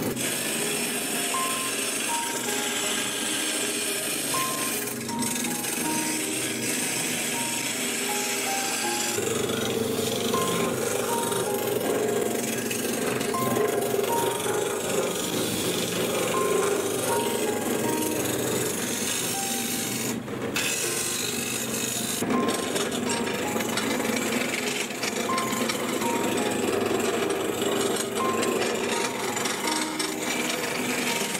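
Lathe gouge cutting a spinning resin-and-wood blank, a continuous scraping hiss of shavings coming off, under background music with short melodic notes.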